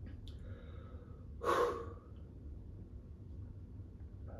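A man lets out one short, sharp breath about a second and a half in, over a faint low steady hum, with a couple of faint clicks near the start.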